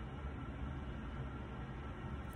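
Steady low background hum with a faint even hiss, and no distinct sounds.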